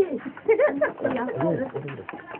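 People's voices, with short pitched calls that rise and fall in arcs.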